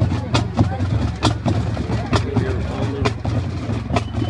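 Marching band drumline keeping a sparse cadence of sharp stick clicks, about one a second, over crowd chatter and a steady low hum.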